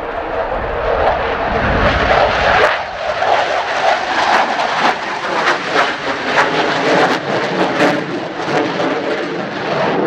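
Jet noise of an F-4EJ Kai Phantom II's two J79 turbojet engines as it passes close overhead and banks away: loud and rough, with a harsh crackle from about three seconds in until about eight seconds. A gust of wind buffets the microphone in the first few seconds.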